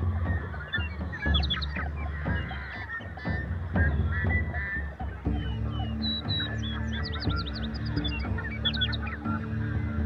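A flock of birds calling over and over in many short calls. Soft ambient music plays underneath, with sustained low chords coming in about halfway through.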